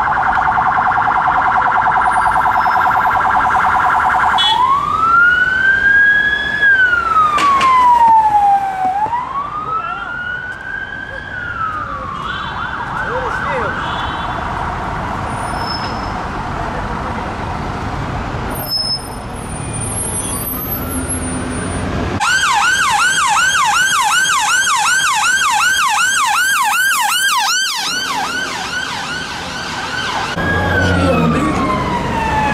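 Police van's electronic siren on a fast yelp, changing about four seconds in to a slow rising and falling wail for two cycles, then back to a fast yelp as the van pulls away. Near the end a second, louder siren takes over with a very rapid warble.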